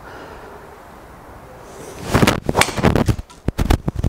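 A Callaway Rogue Sub-Zero driver striking a golf ball with a solid strike about two seconds in. A quick run of sharp knocks and clatters follows for about a second and a half.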